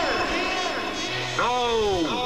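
The shouted name 'Grimace!' echoing back again and again as a canyon echo effect, each repeat the same rising-then-falling call, overlapping one another. A stronger repeat comes in about a second and a half in.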